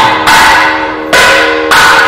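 A bell struck repeatedly, four strokes in two seconds, each stroke ringing on in several steady tones that fade before the next.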